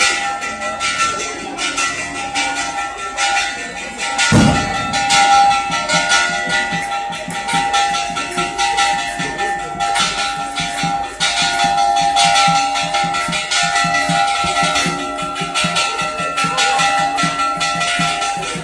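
Asturian gaita (bagpipe) and snare drum playing a processional tune, with bells ringing. A single loud thump comes about four seconds in.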